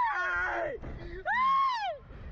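Two young men screaming while being flung and bounced on a slingshot reverse-bungee thrill ride: one high scream that arches up and falls away within the first second, then a second high scream that rises and falls in the last half.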